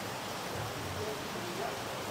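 Steady room noise: a faint, even hiss with no distinct events.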